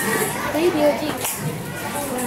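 Indistinct chatter of several people, with a child's voice among them.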